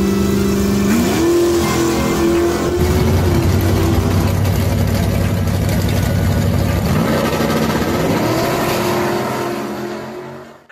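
Drag-racing cars' engines at full throttle down the strip, the pitch climbing as each car accelerates, with a second car's run taking over partway through. The sound fades out near the end.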